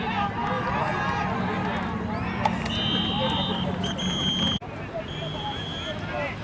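Referee's whistle blown three times, each blast steady and about a second long, starting about halfway through. Voices on the sideline shout and talk throughout.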